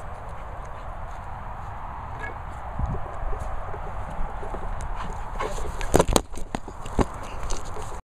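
Wind rumbling on the microphone, with several sharp knocks and thumps near the end, the loudest about six seconds in.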